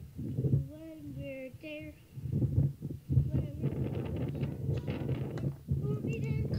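A child's voice on an old iPod voice memo being played back, half singing with a wavering, sing-song pitch in the first couple of seconds and then rougher and noisier.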